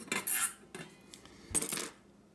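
Metal clinking and rattling as stainless steel stove parts, a spring and screws, are handled against the steel container: two short bouts, one at the start and one about one and a half seconds in.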